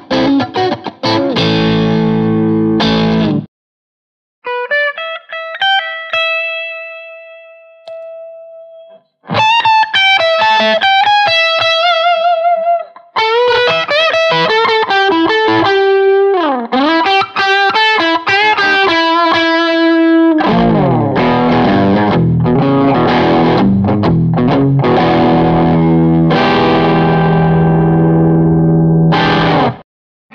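Electric guitar through a JOYO R-04 Zip Amp overdrive pedal and a JOYO JMA-15 Mjolnir amp, in an overdriven tone. A chugging riff stops abruptly, then come sustained single notes with vibrato and lead phrases with a deep string bend. It ends on a thick chord riff that cuts off near the end.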